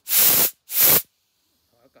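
Compressed-air blow gun firing two short blasts of air, each about half a second, through an outboard carburetor's fuel passages to blow out crystallized fuel deposits.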